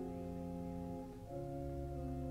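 Church organ playing slow, sustained chords, the harmony moving to a new chord with a deep bass note a little past halfway.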